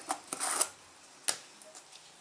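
A plastic bottle and a jar of glitter being handled: a short rustle about a third of a second in, then a single sharp click about a second later.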